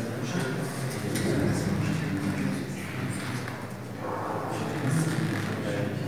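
Indistinct chatter: several people talking at once in low voices, too muddled to make out words.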